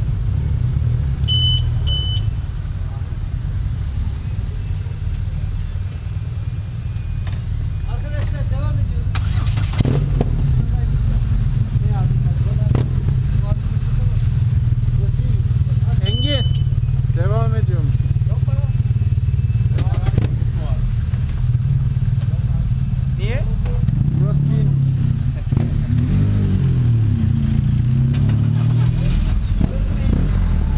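Motorcycle engines running at idle with a steady low rumble, as several motorcycles ride slowly past, one rising and falling in pitch as it pulls away near the end.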